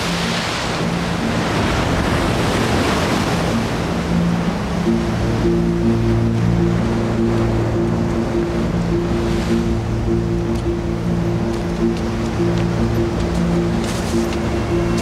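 Sea waves washing on the shore in a steady rush. Low held notes of a film score come in about four seconds in and carry on under them.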